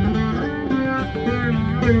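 Rudra veena playing a dhrupad composition in Raag Durga: plucked notes with sliding pitch bends (meend) between them, over pakhawaj drum strokes. A heavy low stroke lands at the start and another near the end.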